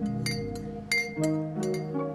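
Ceramic mugs and tableware clinking several times, the loudest clink about a second in, over background music of held notes that shift in pitch.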